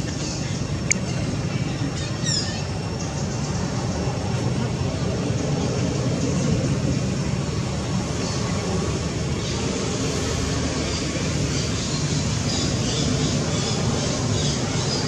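Steady outdoor background noise with a deep rumble underneath, a sharp click about a second in and a short high squeak falling in pitch a couple of seconds in, followed by scattered faint high chirps.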